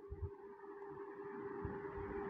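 Faint background room tone with a steady hum holding one pitch.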